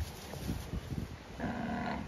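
A short moo from one of the Brahman cattle, about one and a half seconds in, lasting about half a second.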